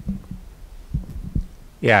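A quiet pause in a hall: faint, irregular low thumps over a low rumble. Near the end a man's voice comes in loudly with "Yeah".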